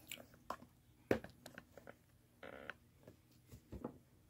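Faint clicks and knocks from a camera being handled and repositioned, the loudest knock a little over a second in, with a brief rustle about two and a half seconds in.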